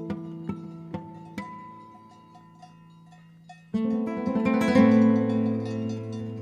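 Guitar music: single plucked notes about two a second, dying away to near quiet by about two seconds in, then a loud strummed passage breaking in near four seconds.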